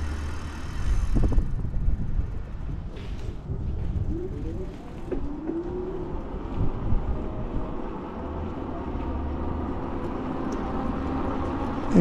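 Ride1Up Cafe Cruiser electric bike being ridden along a street: steady low wind rumble on the handlebar microphone with tyre noise on damp pavement. A brief rising whine comes about four seconds in.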